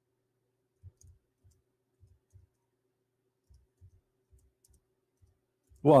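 Faint, irregular dull clicks from a computer keyboard and mouse, a dozen or so spread over several seconds, over a faint steady hum. A man's voice comes in just at the end.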